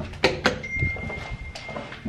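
Handling noise of a handheld camera: two sharp knocks about a quarter and half a second in, then rubbing and rustling against a cotton shirt, with a faint steady high tone for about a second.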